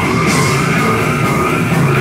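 Death metal band playing live and loud: heavily distorted electric guitars and bass over drums with crashing cymbals, and harsh vocals shouted into the microphone.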